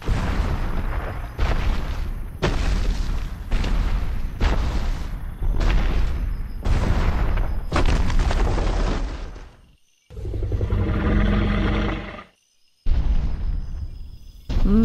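Giant dinosaur sound effects: a run of heavy booming footsteps with a deep rumble, about one a second, then about ten seconds in a deep roar lasting about two seconds.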